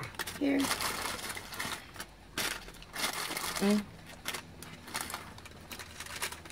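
Paper takeaway food packaging rustling and crinkling as it is handled, in irregular short crackles.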